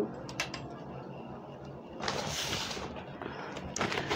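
Small clicks and a brief rustle from handling the ring light while trying to switch it on: a few light clicks about half a second in, a short rustling a little after two seconds, and more clicks near the end.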